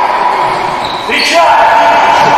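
Futsal ball bouncing and being kicked on a wooden sports-hall floor, echoing in the hall, with shouts from players about a second and a half in. A steady high tone runs underneath.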